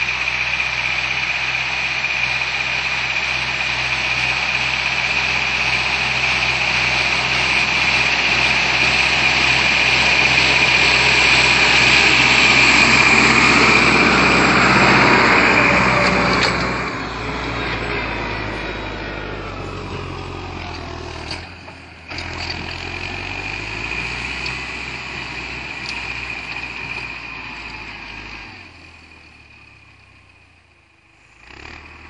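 Fendt 310 LSA tractor's diesel engine working under load while ploughing. It grows louder as the tractor approaches, is loudest as it passes close by about halfway through, then drops off and fades as it pulls away.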